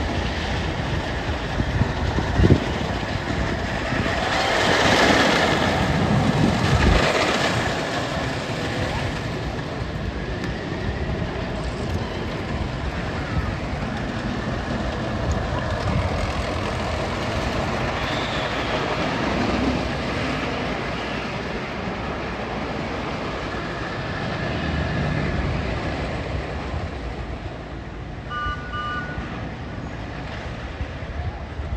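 Wooden roller coaster train rumbling along its track, loudest for a few seconds about four to eight seconds in, with people's voices mixed in.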